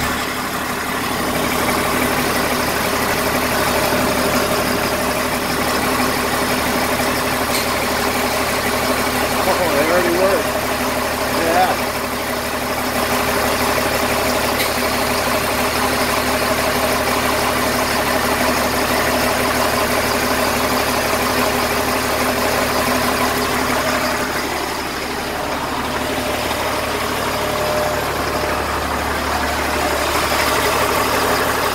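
LMTV military truck's six-cylinder turbo diesel idling steadily while its compressor refills the drained air tanks.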